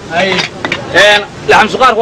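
People's voices talking, with no other clear sound standing out.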